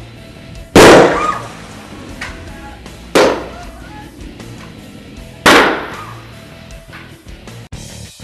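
Three loud bangs about two and a half seconds apart, each fading quickly: a dry ice bomb, dry ice sealed in a plastic bottle with water, bursting under the water of an aquarium. Rock guitar music plays underneath.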